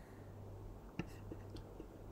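Quiet room with a steady low hum, broken about a second in by a single computer mouse click selecting a piece, followed by a few faint ticks.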